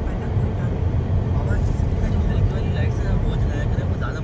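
Steady low rumble of a car driving, heard from inside the cabin, with faint voices in the background.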